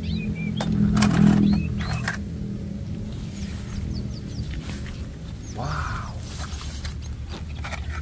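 Plastic toys clattering and grass rustling as a toy truck is set into a plastic basket and the weeds are searched, loudest in the first two seconds. A steady low drone runs underneath, with a few faint high chirps.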